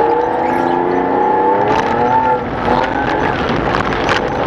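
A race car's engine heard from inside the cabin, running steadily at moderate revs, its pitch wavering gently, with a brief drop in level a little past halfway.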